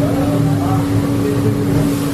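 A motor running steadily, with one constant low tone over a low rumble.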